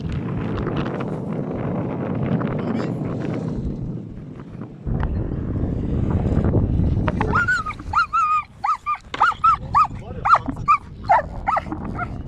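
German Shepherd dog whining in a run of short, high-pitched whimpers, about two a second, starting about seven seconds in. The dog is straining to get at a cow while it is held back.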